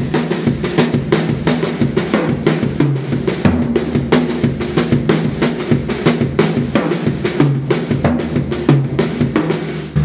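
Tama acoustic drum kit played as a fast, busy groove: rapid stick strokes on the snare and toms with the bass drum under them, and the toms ringing. Snare accents fall on beats two and four, and the right hand travels across the toms.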